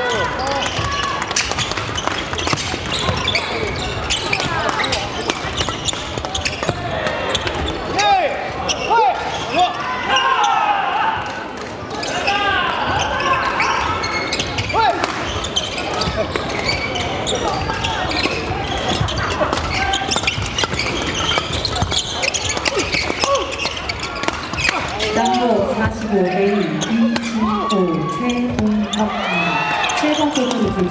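Badminton play in a large, echoing hall: rackets striking the shuttlecock in sharp cracks and shoes squeaking on the wooden court floor, over steady voices and calls from players and onlookers. A voice calls out in long, wavering tones near the end.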